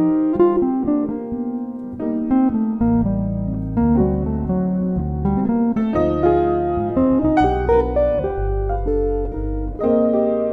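Jazz trio of electric guitar, electric bass and piano playing a slow ballad, with the guitar carrying the line. Low electric bass notes come in strongly about three seconds in.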